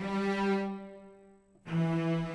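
Sampled cello section from a virtual string library playing a sustained bowed G that fades away, then a second sustained note a step lower, on F, about one and a half seconds in.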